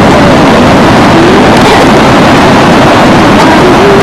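Loud, steady rush of sea wind and breaking surf on the microphone, close to overloading it.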